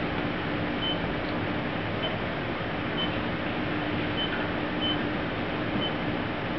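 Steady machine hum and fan-like rush with a low droning tone, from a running 45-watt CO2 laser rig. Faint short high beeps come about once a second.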